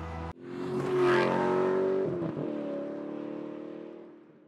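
BMW X3 xDrive30e's 2.0-liter turbocharged four-cylinder engine accelerating as the SUV pulls away, its pitch dropping at an upshift about two seconds in, then fading as it recedes.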